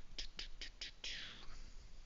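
Four soft, quick clicks about five a second, then a breathy hiss lasting about half a second, like an exhale.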